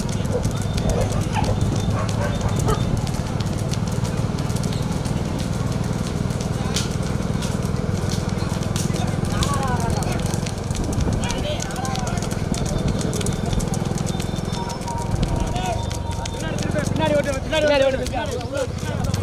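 Motorcycle engines running steadily close behind running bullocks, whose hooves clop on the asphalt road, while men shout and call to the animals; the shouting grows louder near the end.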